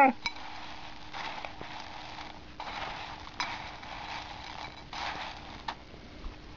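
Dry crunchy cereal pieces rattling into a bowl in three short pours, about a second each, with a few sharp clicks among them.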